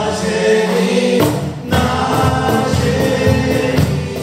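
Live singing of a Polish Christmas carol, a woman's voice leading with others joining, over acoustic guitar accompaniment. The singing breaks off briefly about a second and a half in, then carries on.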